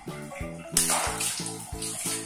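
A water balloon bursting with a sudden pop and splash about three-quarters of a second in, water sloshing after it, over background music with a steady beat.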